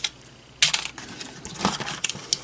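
Small electronic parts and a hand knocking against a clear plastic compartment box, a few sharp clicks and light clatter, the loudest about half a second in.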